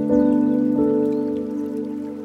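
Slow, gentle piano music, with a new chord struck just after the start and another note change a little under a second in, laid over a soft bed of flowing water.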